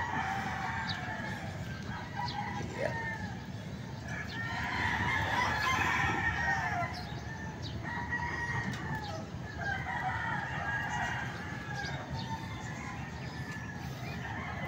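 Roosters crowing one after another, a long crow every couple of seconds, the longest and loudest about four seconds in.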